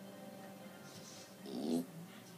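A single short pitched cry, under half a second, about one and a half seconds in, over faint steady background music.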